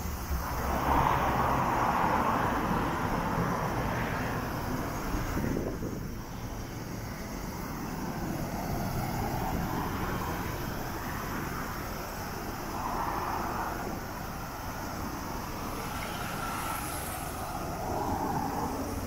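Road traffic: cars passing one after another, each pass swelling and fading, the loudest in the first few seconds.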